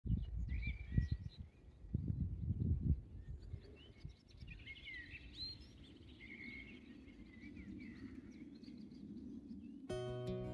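Songbirds singing, a string of short chirps and warbled phrases, with wind buffeting the microphone in low rumbling gusts during the first three seconds, then easing to a steady soft rush.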